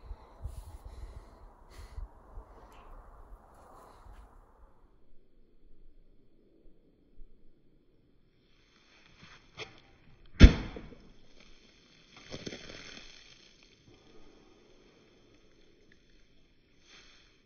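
A throwing tomahawk with a Thor's-hammer-style head hitting a wooden log-slab target: one sharp, loud thunk about ten seconds in, with a smaller click just before it and a softer rustle about two seconds later.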